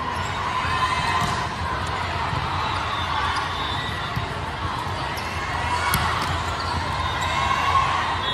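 Steady, echoing din of a vast hall holding many volleyball courts at once: balls being hit and bouncing on the floors, with players and spectators talking and calling. A sharper smack of a ball stands out about six seconds in.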